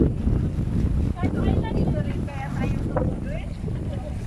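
Wind buffeting the microphone in a heavy, steady low rumble, with several people's voices calling out over it.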